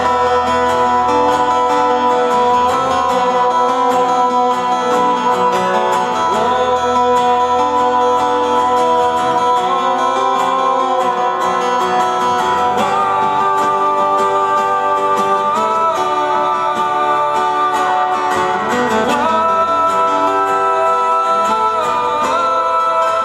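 Live acoustic song: two acoustic guitars played together, with a male voice singing long held notes over them.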